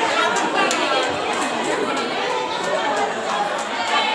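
A crowd of young people chattering, with many voices overlapping and no single speaker clear, broken by scattered light clicks.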